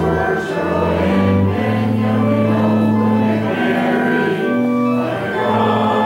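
Congregation singing a canticle together, accompanied by an instrument playing long-held chords and bass notes.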